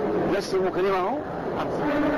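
Speech only: a voice talking, with one drawn-out vowel held level for about half a second in the second half.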